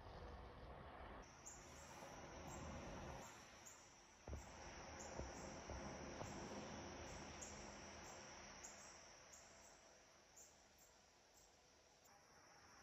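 Faint insects chirping outdoors in a high, even pulse about twice a second, over a soft hiss, with a few soft knocks near the middle.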